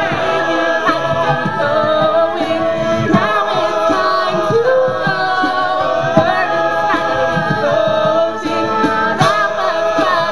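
A cappella group singing live, with no instruments: a female lead voice in front of the group's backing vocals.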